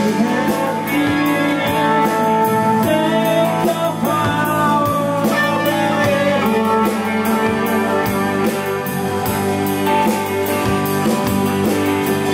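A rock band playing live: electric and acoustic guitars, bass and drums over a steady beat.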